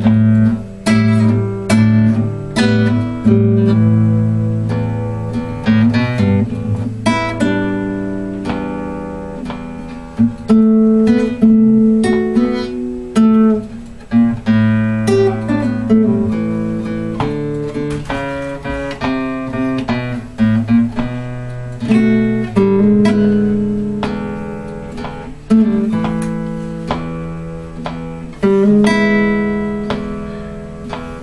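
Nylon-string acoustic guitar played with the fingers in a blues style: low bass notes ring under plucked chords and single-note lines.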